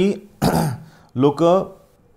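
A man clears his throat once, briefly, about half a second in, between spoken words.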